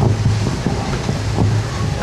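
Low, steady rumble of wind on the microphone.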